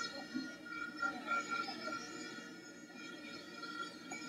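Stadium crowd background from a football match broadcast, a steady hubbub with several steady high tones running through it.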